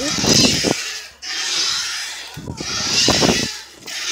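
Wind rushing over a handheld phone's microphone as it moves on a swing, a hiss with rough low buffeting that swells and fades in time with each pass, about every second and a half.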